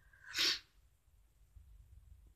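A single short burst of breath from a person, sneeze-like, about half a second in.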